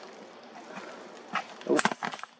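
Handling knocks from a camera being tilted on its mount: a faint click, then a short, sharp clatter near the end as the tilt goes wrong and the camera lurches.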